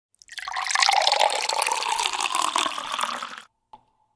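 Intro sound effect: a dense, crackling rush of noise that swells up within half a second, holds for about three seconds and cuts off abruptly, followed by a single short click.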